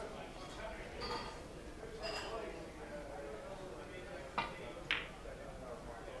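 Two sharp clicks of ivory-like billiard balls knocking together, about half a second apart, over a faint murmur of voices in the hall.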